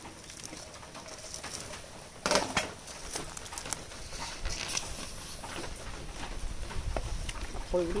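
Lid lifted off a large pot of soup boiling over a wood fire, with a clank about two seconds in, then a ladle stirring the bubbling soup. Bird calls in the background.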